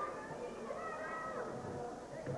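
Spectators shouting high-pitched calls at the wrestlers, several voices rising and falling over one another.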